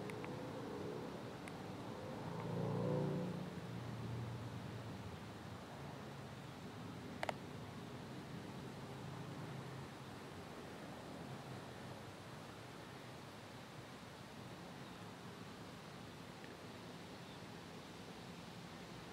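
A vehicle passing by: a low rumble that swells and fades about three seconds in, then faint rustling, with one sharp click about seven seconds in.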